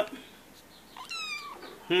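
A domestic cat meows once, a short high call that falls in pitch, about a second in. A sharp knock comes right at the start.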